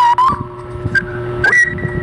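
A young woman singing high, held notes into a handheld microphone: one long note at the start, a short note about a second in, and a higher held note near the end.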